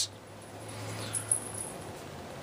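Soft handling of a squeezable plastic alligator dart shooter as a foam dart is pushed into its mouth, with a couple of faint light ticks about a second in, over a low steady hum.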